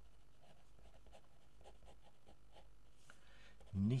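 Fine-tip pen writing on paper: faint, quick scratching strokes as words are written out. A man's voice starts just before the end.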